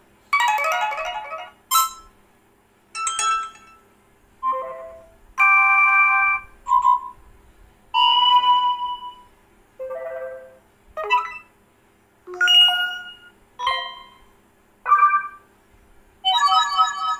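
Stock Android notification tones on a Lava Z2 smartphone, previewed one after another as each entry in the notification-sound list is tapped: about a dozen short chimes and jingles, each different, with brief gaps between.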